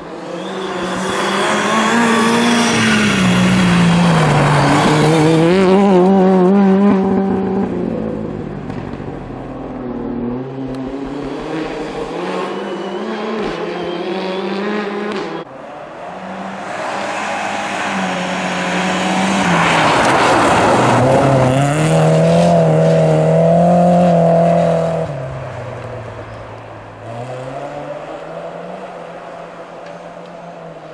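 Rally car engines driven hard on a snowy stage: two loud passes, each building, revving up and down with gear changes and lifts through the corner, then fading. The first pass breaks off suddenly about halfway through, and the second fades out near the end.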